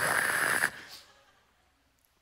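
A man's long, breathy exhale with a hiss, which stops about two-thirds of a second in and trails off into near silence.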